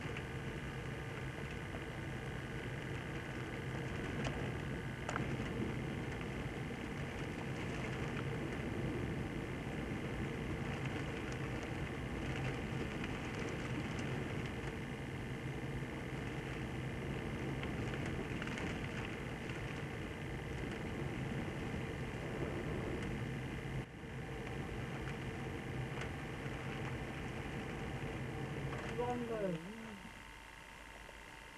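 Strong wind on a camcorder microphone over breaking surf: a steady, noisy rush. It drops away abruptly at the very end.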